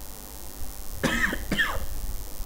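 A man clearing his throat: two brief vocal sounds about a second in, over a low background rumble.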